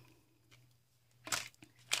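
Near silence with room tone, broken near the end by one short, soft rustle.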